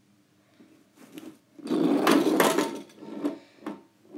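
Two toy monster trucks rolling and rattling down a cardboard game-board ramp: a dense clatter of about a second starting under two seconds in, with a few lighter knocks before and after it.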